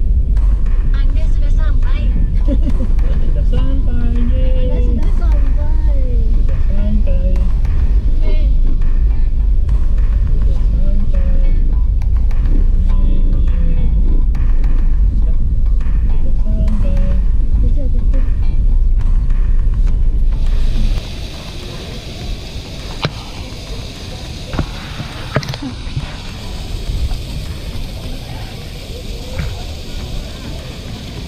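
Car interior rumble from driving slowly along a road. About two thirds of the way through it cuts to the steady rush of a small garden waterfall, with a few sharp clicks.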